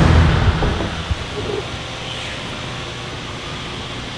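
Music ends in the first half-second, then a steady even hiss and hum of a large workshop floor.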